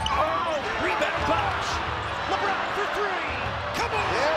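Basketball game sound from an arena: a steady crowd noise, with many short sneaker squeaks on the hardwood court overlapping throughout.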